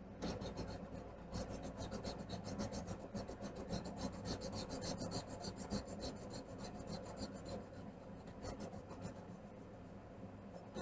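Coloring on paper: rapid back-and-forth scribbling strokes of a coloring tool on a page, a continuous scratchy rasp of many strokes a second that eases off near the end.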